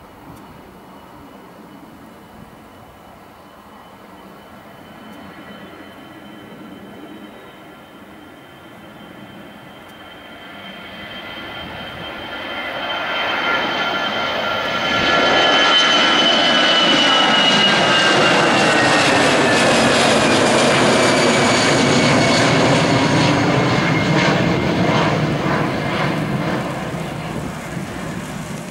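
Airbus A319's twin CFM56 turbofans at takeoff thrust: a steady whine and rumble during the takeoff roll that grows much louder from about halfway as the jet climbs past. The high whine falls in pitch as it goes by, and the sound eases off a little near the end.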